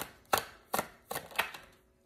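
Oracle card deck being shuffled by hand, with five sharp slapping strokes of cards against the deck, about two or three a second.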